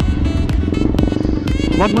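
Background music over the steady running of a KTM Duke 200's single-cylinder engine on the move. A man's voice starts near the end.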